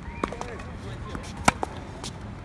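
Tennis balls struck by racket strings on a hard court: a faint distant hit just after the start, then a loud, sharp close-by forehand about a second and a half in. Faint short squeaks come in between.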